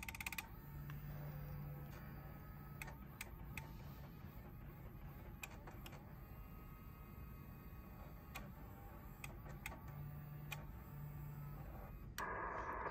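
The Yaesu FT-890/AT's internal automatic antenna tuner retuning while it searches for a match on 80 meters. Its small motors, which drive the air-variable capacitors, give a faint whir for the first few seconds and again near the end. A quick run of clicks at the start and scattered single clicks throughout come from the relays switching its inductors in and out.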